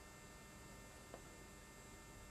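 Near silence with a faint steady electrical hum, and one faint click about a second in.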